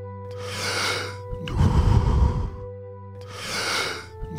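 A man breathing deeply and forcefully in the power-breathing rhythm of the Wim Hof method: a hissing inhale, a full exhale blown out, then another inhale near the end. A steady, droning ambient music bed plays under it.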